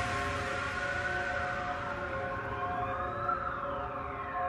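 Quiet ambient electronic music: a sustained synth chord under a fading wash left from a hit just before. A slow, siren-like sweep rises and then falls through the second half.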